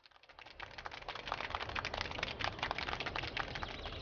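Audience applause: many hands clapping, swelling up from nothing over the first second or so, then holding steady.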